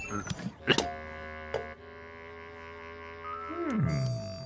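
Cartoon soundtrack: held music notes with a few sharp knocks in the first second and another about a second and a half in, then a sliding fall in pitch near the end.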